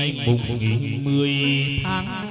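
Vietnamese chầu văn ritual music: chant-like singing with instrumental accompaniment, with a long held low note in the middle.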